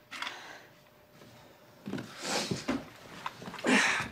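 A woman's breathy gasps and short low groans of pain, starting about two seconds in and growing stronger near the end.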